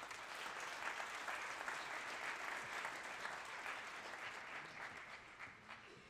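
An audience applauding in an auditorium, a steady patter of many hands clapping that gradually fades out near the end.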